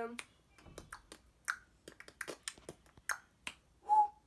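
About a dozen sharp, irregularly spaced clicks, with a short steady tone near the end.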